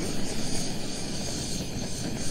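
Handheld kitchen torch flame hissing steadily as it melts and caramelizes the sugar topping on crème brûlée.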